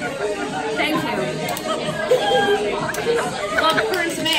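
Indistinct chatter of several people talking over one another in a room, with no one voice clear.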